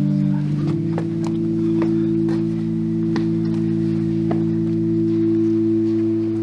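Pipe organ playing a sustained chord; the chord changes about half a second in and is then held, with faint scattered clicks over it.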